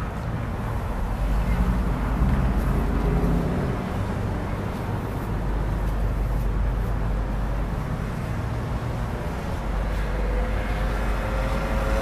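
Steady outdoor road traffic noise with a heavy low rumble.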